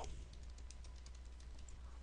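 Computer keyboard keys being typed: a quick run of faint, light keystrokes as a word is entered, over a low steady hum.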